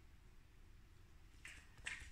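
Near silence: faint room tone, with two short faint clicks near the end.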